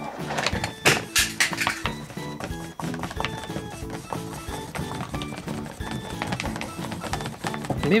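Background music with a simple stepping melody, over the clicks and taps of a paintbrush stirring paint in a plastic palette well. The taps are sharpest in the first two seconds.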